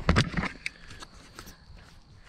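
Camera handling noise: a few sharp knocks in the first half second as a finger touches the camera and it is turned, then faint scattered clicks and scuffs.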